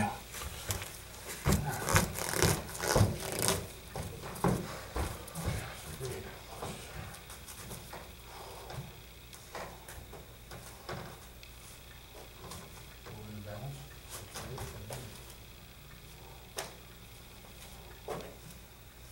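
Knocks and thuds of people moving barefoot on foam gym mats close to the microphone, a quick run of them in the first few seconds, then fainter scattered taps. A few quiet words are spoken later.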